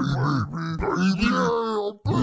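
A deep male voice grunting and groaning in drawn-out, wordless sounds, cutting out abruptly at the very end.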